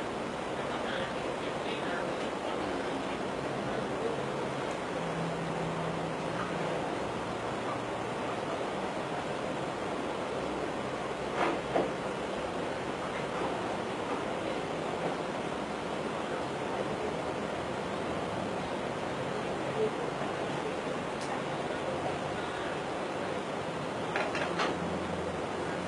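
A steady, even hiss of background noise, with two faint knocks close together about eleven and a half seconds in.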